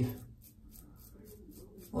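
Karve Christopher Bradley safety razor with a Gillette Super Thin blade scraping through lathered neck stubble in quick short strokes, about six or seven a second.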